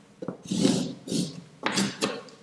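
Chalk writing on a blackboard: about four short scratching strokes as a word is written.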